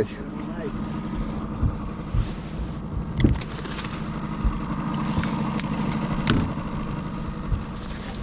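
A boat motor running steadily at trolling speed, a low even hum, with a couple of short knocks about three and six seconds in.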